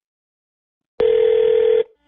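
A telephone ringback tone heard down the phone line: one short steady ring starts about a second in and cuts off after under a second. This is the line ringing at the called party's end as the prank call is placed.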